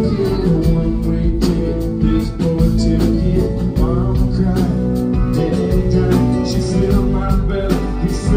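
Live country band performance: strummed acoustic guitar over bass and a steady drum beat, with a man singing the song.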